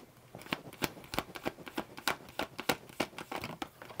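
A deck of tarot cards being shuffled by hand: a quick, irregular run of short card clicks and slaps, several a second.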